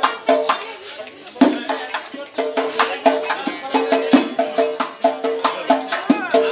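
Live Uzbek folk music: a doira frame drum with jingle rings beating a quick rhythm of sharp strokes and jingles, over repeated pitched notes from an accompanying instrument. Two strokes, about a second and a half and about four seconds in, are much louder than the rest.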